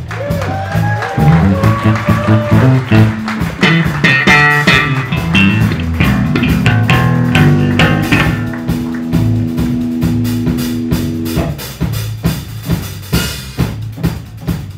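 Four-string electric bass guitar playing a solo break over light drums, with sliding notes in the first few seconds and a long held note in the middle.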